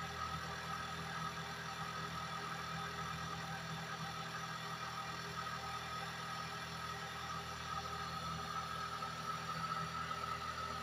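A steady hum with a faint held whine above it, unchanging throughout, like a motor or engine running at constant speed.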